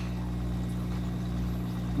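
A steady low mechanical hum, as of a motor or pump running, unchanging throughout.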